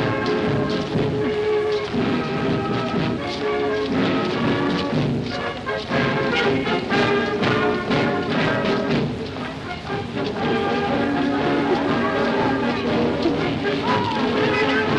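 A military brass band playing a march with drums.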